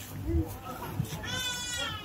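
A single high-pitched, wavering cry lasting under a second, starting about a second and a quarter in, over a background murmur of voices.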